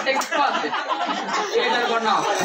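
Speech: performers talking over a microphone, with overlapping voices.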